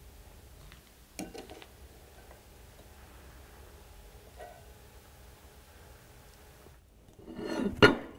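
Steel vernier caliper clicking lightly against steel plate edges during measurement, a sharp click about a second in and a fainter one around four seconds. Near the end, a louder clatter as the steel plates are handled on the metal bench.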